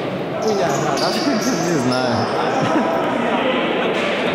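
Echoing sports-hall ambience: players' voices calling out and a ball bouncing on the hall floor, with a few short high squeaks.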